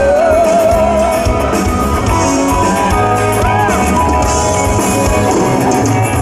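Live pop-rock music: a male singer holding a long note with vibrato that ends about a second in, over acoustic guitar and a band.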